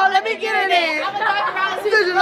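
Women's voices chattering, with no clear words.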